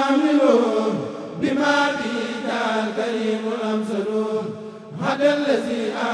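A kurel, a group of men, chanting a Mouride khassida (an Arabic devotional poem) in unison through microphones, with no instruments. The singing is loud and held in long, drawn-out notes, dropping briefly about a second in and again near the five-second mark between verse lines.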